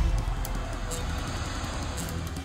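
Intro theme music with a rushing, whooshing noise over it that gradually fades.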